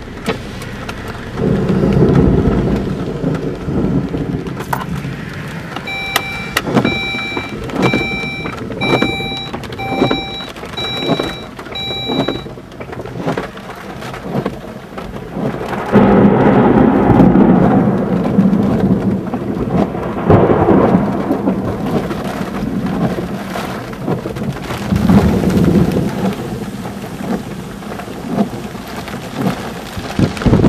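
Rain pattering on a car's roof and windshield while thunder rolls several times in long, deep rumbles, the loudest about halfway through. For about six seconds early on, a car's warning chime beeps steadily, about one and a half beeps a second.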